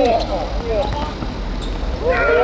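A football being kicked on artificial turf, making short thuds, with players shouting around it.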